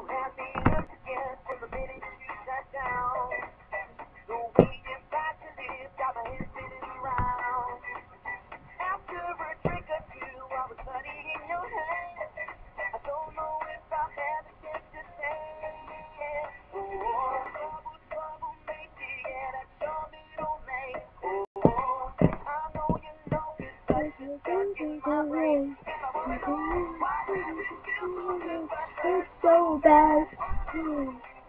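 A song with a melodic singing voice and music, with a few sharp knocks during it.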